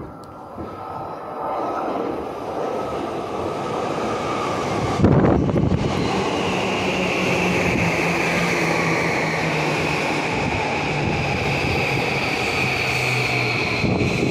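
JR Yamanote Line electric commuter train pulling into the station platform. The sound builds as it approaches, with a loud rush about five seconds in as the front passes close by. Then it runs on past the platform doors with a high motor whine that slowly falls in pitch as it slows.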